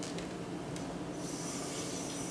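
Kitchen sink faucet running, the water coming on a little over a second in as a steady hiss.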